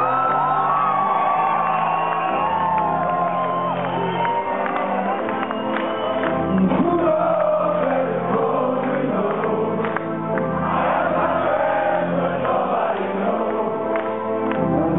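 Live rock band music: sustained keyboard chords changing every second or two under a male lead vocal, with the audience singing along and whooping.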